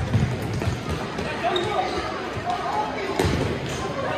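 Futsal ball being kicked and bouncing on an indoor court, echoing in a large sports hall: a thud right at the start and another about three seconds in, with players' shouts in between.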